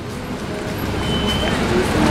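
Low rumble of road traffic, a vehicle passing and growing steadily louder.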